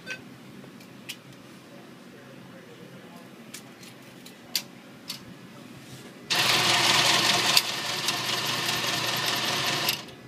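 ATM cash dispenser running as it counts out and pushes out a stack of banknotes: a loud, steady mechanical whirring that starts suddenly about six seconds in and stops near the end. A few faint clicks come before it.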